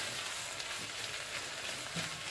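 Carrots, onion and tomato paste frying in a little oil in a pot, sizzling steadily while a silicone spatula stirs them.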